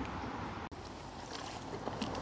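Faint steady outdoor background hiss with no distinct event, broken by a momentary dropout about two-thirds of a second in where the footage is cut.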